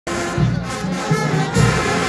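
Marching band music, brass over low drum beats, with crowd noise underneath.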